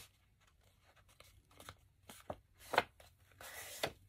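Stiff patterned paper being folded and creased by hand: faint scattered crackles and clicks, with a short rustle near the end.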